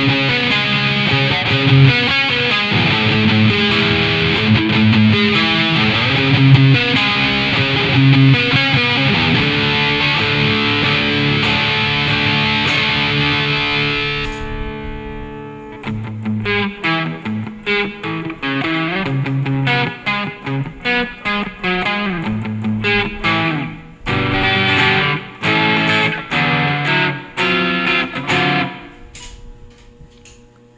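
Les Paul-style electric guitar with Wilkinson Alnico V humbucking pickups, played through tube-screamer overdrive with delay and reverb. It begins with dense, sustained lead lines. About halfway through it turns darker and changes to short, choppy notes and chords with gaps between them, stopping just before the end.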